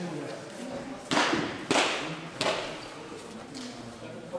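Three sharp hand slaps about half a second apart, over a low murmur of voices.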